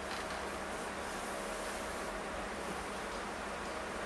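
Steady background hiss with a faint hum and no distinct events: room tone.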